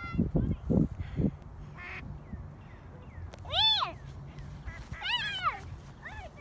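Two loud, drawn-out animal calls, each rising and then falling in pitch, about a second and a half apart near the middle and end, with low thumps in the first second.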